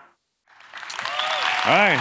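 Audience applause rising out of a moment of silence about half a second in, with voices calling out near the end.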